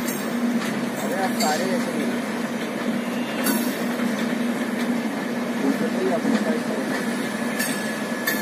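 Humsafar Express LHB passenger coaches rolling past at departure speed: a steady rumble of wheels on rail, with a few sharp clicks as wheels cross rail joints.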